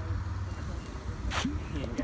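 A vehicle engine idling with a steady low rumble, and a short sharp hiss about one and a half seconds in.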